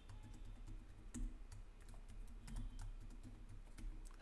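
Computer keyboard typing: a run of quick, irregular keystrokes as a password is typed in and then typed again to confirm it.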